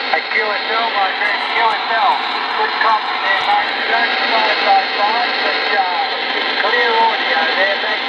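A distant station's voice coming in over a CB radio receiver, buried in steady static hiss: an 11-metre skip signal from Australia, which the operator calls a Q5 copy with a clean signal.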